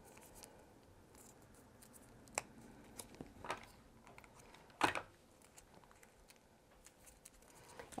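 Faint handling sounds of paper crafting: light rustles of paper and foil and a few sharp little clicks and taps, the loudest about five seconds in. They come as a paper band is wrapped around a foil-wrapped chocolate nugget and fixed with a hot glue gun.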